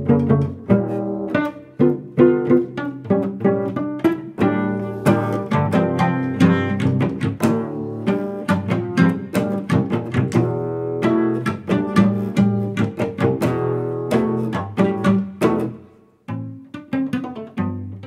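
Solo cello played with the fingers rather than a bow: a fast, rhythmic run of plucked notes with sharp attacks. A brief break comes about 16 seconds in, then the plucking resumes.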